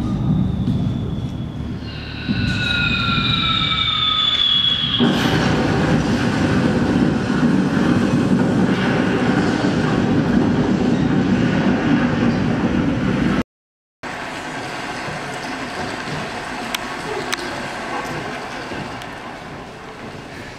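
Train sound effect played over a theatre's sound system: a loud steady rumble, with a high tone that falls slightly in pitch for a few seconds near the start. About two-thirds of the way in, it cuts off abruptly to silence, followed by a quieter steady noise.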